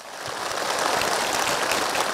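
Crowd applauding: many hands clapping together, building up over the first second and then holding steady.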